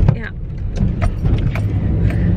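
Inside the cabin of a moving car: the steady low rumble of engine and road noise, with a few light clicks.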